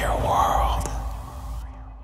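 A whispered voice drenched in echo saying "World" over a low rumble. Both fade away about one and a half seconds in.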